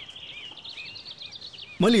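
Small birds chirping, a quick run of short, high chirps over a soft background hiss. A man's voice cuts in near the end.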